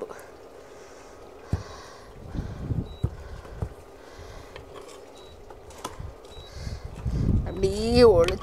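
A steel ladle giving a few light, scattered clicks against a stone cooking pot and a plate while curry is served, with low rumbling handling noise between them.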